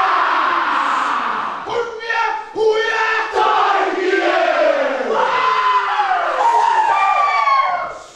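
A group of schoolboys huddled together, shouting a chant in unison as a war cry, with long held calls falling in pitch near the end. It stops abruptly.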